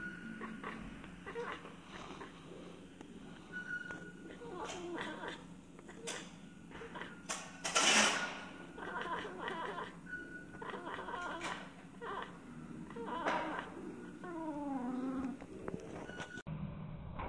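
Bengal cat chattering and chirping at birds, slowed to half speed so the calls come out deep and drawn-out, like a lion's. A string of short calls, with one louder, harsher call about halfway and a long falling call near the end.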